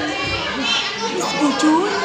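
Children's voices talking and calling over one another, indistinct chatter with no clear words.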